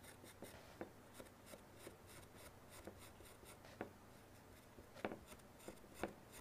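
Carving tool scratching sgraffito lines through underglaze into a dry clay plate: faint, quick, repeated scratchy strokes. A few light knocks come from the plate rocking on the board as she presses down.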